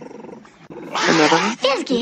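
A pet dog vocalising while begging for a treat: a rough grumbling burst about a second in, then short whining calls that swoop up and down in pitch near the end.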